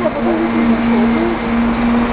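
A steady mechanical hum at one constant pitch, with a woman's voice talking over it.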